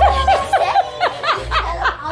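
Girls laughing and giggling over background music with a low bass line.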